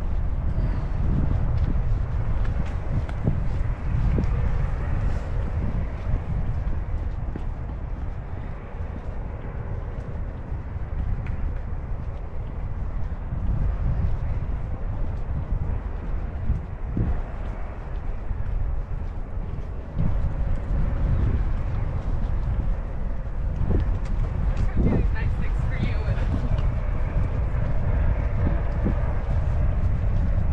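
Wind buffeting the GoPro Hero 10's built-in microphone, a steady low rumble, with faint voices of passersby coming through now and then.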